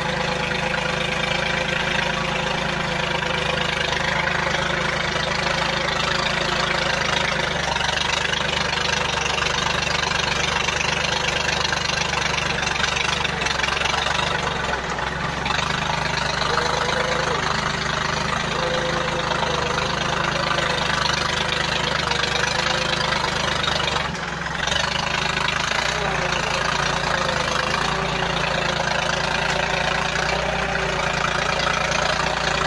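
Yanmar 1145 tractor's diesel engine running steadily while the tractor pulls a five-shank subsoiler through the soil, with a brief dip about 24 seconds in and a slight change in engine note shortly after.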